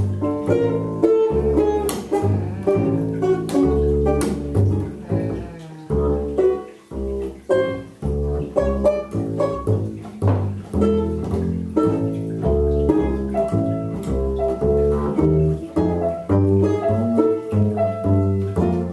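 Instrumental improvisation on banjo, bass and keyboard: a run of plucked banjo notes over bass notes.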